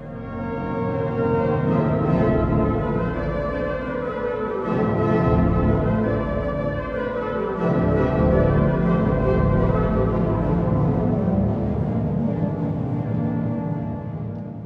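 Large pipe organ playing loud, sustained full chords over deep bass, the harmony shifting about four and a half and about eight seconds in.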